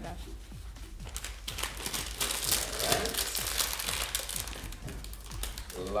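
Plastic snack-chip bag crinkling and rustling as it is handled, with the crackling growing busier and louder about a second and a half in.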